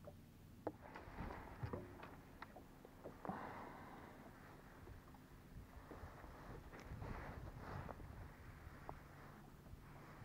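Faint clicks, knocks and rustling of a fishing rod and spinning reel being handled and taken from a rod holder, over a low steady motor hum.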